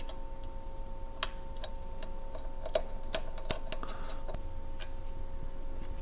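Light clicks and taps of tools and small parts being handled while the feed plate and clamp arm of a Brother KE-430C industrial sewing machine are taken off: a few single clicks, then a quick run of them about halfway, over a faint steady hum.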